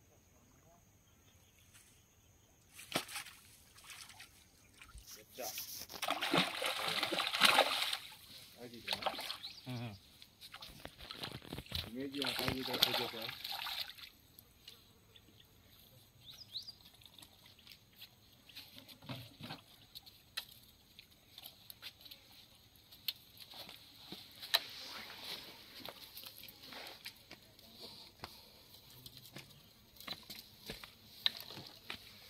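A hooked rohu thrashing and splashing at the water's surface as it is played and pulled out, in two loud spells in the first half, then smaller, fainter sounds as it is landed.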